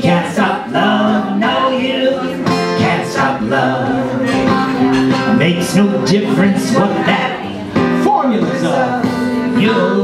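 Live acoustic song: a strummed acoustic guitar with a man's and a woman's voices singing.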